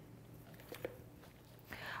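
Near silence: faint room tone with two soft clicks a little under a second in. No blender motor is heard.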